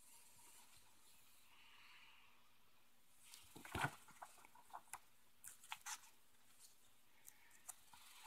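Near-quiet room with faint rustling and crinkling as comic book pages are handled and turned: a string of short, soft crackles starting about three seconds in, the loudest just before four seconds.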